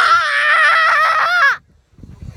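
A child's long, high-pitched scream with a wavering pitch, cutting off suddenly about one and a half seconds in.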